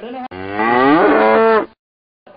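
A cow mooing: one long, loud moo whose pitch rises and then holds, cut off suddenly.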